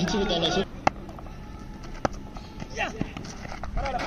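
Men's voices calling briefly, then quiet outdoor background broken by two sharp clicks about a second apart, and a short shout of "yes" near the end.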